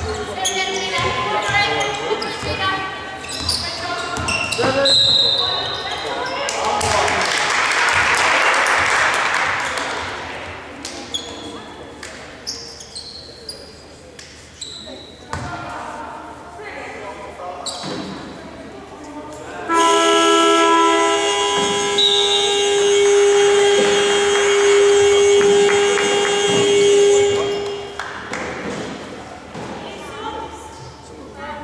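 Basketball game sounds in an echoing sports hall: a ball bouncing on the court, shoes squeaking and players' shouts. About twenty seconds in, a loud, steady horn sounds for several seconds.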